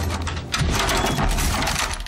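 Film soundtrack with loud metallic clinking and clacking as guns are racked.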